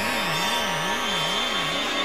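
Synthesized sound effect: a low electronic tone wavering evenly up and down about two and a half times a second, over a steady high hiss.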